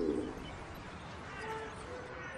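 A hungry stomach growling: a gurgling rumble with a sliding pitch that tails off in the first moments, followed by a faint short tone about a second and a half in.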